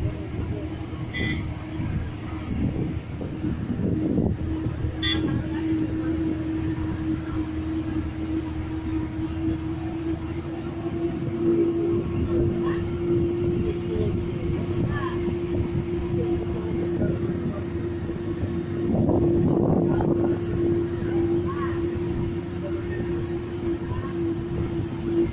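Diesel bus running along a winding mountain road, heard from inside near the back: a steady low rumble with a constant hum through it, swelling louder about nineteen seconds in.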